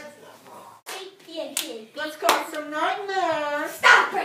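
A child laughing, with a few sharp smacks like hand claps spread through the moment. Near the end comes a long, wavering voiced sound that rises and falls in pitch.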